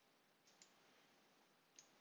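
Near silence with a faint computer mouse click about half a second in, opening the Windows Start menu.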